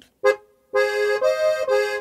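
Styrian diatonic button accordion (Steirische Harmonika) playing the opening of a short introduction. A brief first note is followed by sustained chords that change twice.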